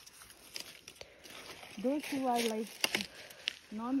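Leaves and stems rustling, with a few sharp snaps, as nettle leaves are picked by hand in thick undergrowth. A short voiced sound from a woman comes about halfway through.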